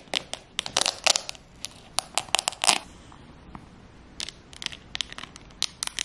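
A Fendi sunglasses case being opened and sunglasses handled close to the microphone: a quick run of sharp clicks, crackles and crinkles, a short lull, then more clicking.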